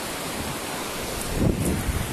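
Steady rushing noise of wind buffeting and handling on a hand-held camera's microphone as it is carried through brush, with a low swell about one and a half seconds in.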